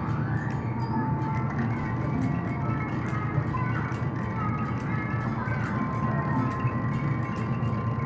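Steel balls tumbling through a pegboard of metal nails as the disk is turned, giving a scatter of small clicks and short ringing pings at different pitches, over a steady low background hum.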